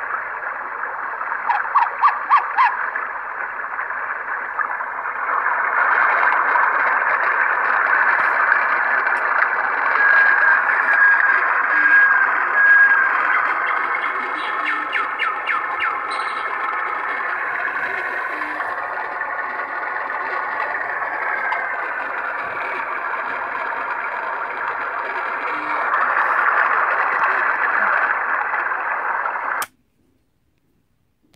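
Recorded sound played back from the EPROM of a Hong In KS-61 sound-synthesizer board through its small on-board speaker: thin and narrow, like a small radio, with music-like and voice-like passages. It cuts off suddenly just before the end.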